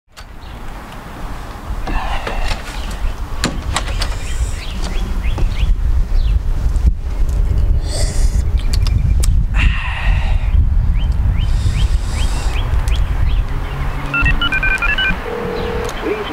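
Outdoor ambience with a heavy low rumble and scattered clicks and hisses. Near the end, a run of short electronic beeps from a mobile phone on speakerphone, then a steady tone as the call goes through to voicemail.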